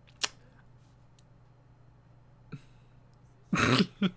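A man stifling laughter: a short sharp burst of breath about a quarter second in, a faint one midway, then a louder burst of laughing breath near the end.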